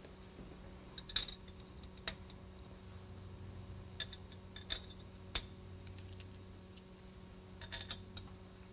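A handful of light metallic clinks and taps, spread out, as small steel mounting screws are handled and set into the bolt holes of a metal carburetor adapter plate. A low steady hum runs underneath.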